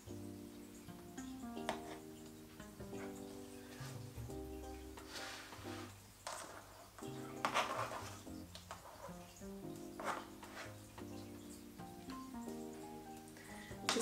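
Soft background music of held notes that change every second or so. A few brief scraping sounds of a metal spatula spreading buttercream on the cake come through.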